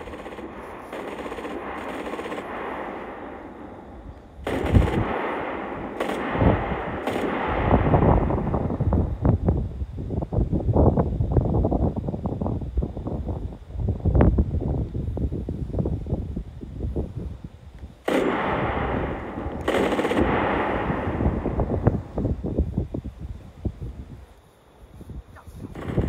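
Rapid automatic machine-gun fire in long bursts, starting suddenly about four seconds in, with stretches of dense rumbling noise at the start and again near the end.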